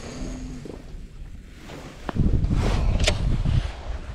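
Wind buffeting the microphone as a low rumble. It is loudest for about a second and a half after the midpoint, with one sharp click about three seconds in.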